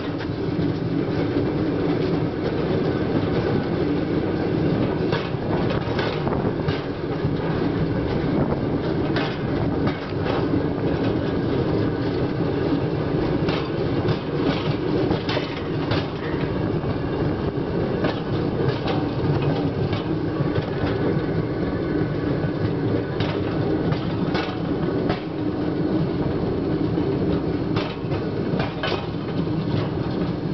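Steel wheels of a man-powered draisine rolling along old rails: a steady rumble with irregular clicks and clacks as the wheels run over the rail joints.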